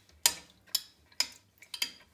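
A metal spoon stirring water in a ceramic toilet bowl, clinking sharply against the bowl four times, about two clinks a second.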